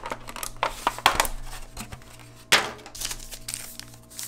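Clear plastic sushi container and its packaging crinkling and crackling as they are opened and handled, in irregular snaps, with a sharp crackle about a second in and the loudest one about two and a half seconds in.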